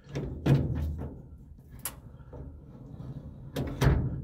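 A truck's steering-column gear selector lever being pulled back and moved through its positions: several metal clunks and a sharp click as it releases and drops into its detent holes, with the loudest clunk near the end.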